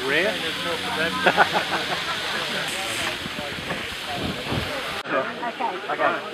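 Food frying on an outdoor barbecue, a steady sizzling hiss with people talking over it. It cuts off suddenly about five seconds in, leaving only voices.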